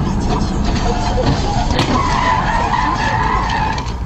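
Car tyres squealing in a skid for about two seconds from halfway through, over steady road noise.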